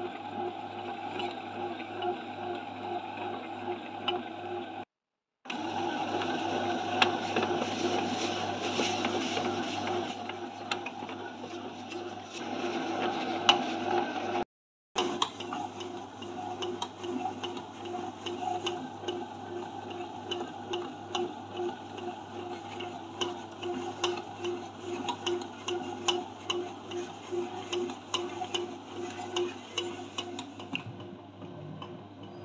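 SilverCrest SBB 850 D1 bread maker kneading dough: its motor hums steadily while the paddle turns the dough ball, with regular soft knocking throughout. The sound cuts out briefly twice, about five and fifteen seconds in.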